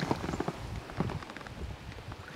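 Light water splashing with small, irregular knocks as a smallmouth bass is lowered by hand into the river over the side of a boat.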